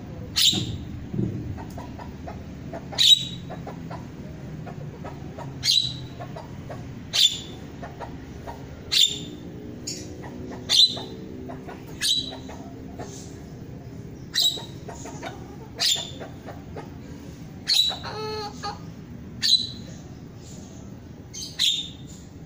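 Caged starling (jalak) giving short, sharp calls over and over, about one every one and a half seconds, with one longer call of several tones about three-quarters of the way through.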